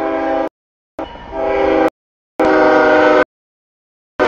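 CSX freight locomotive's air horn sounding its chord in three blasts for the grade crossing. The first blast ends about half a second in, the second starts about a second in, and the third runs from about two and a half seconds in. Each blast cuts off sharply.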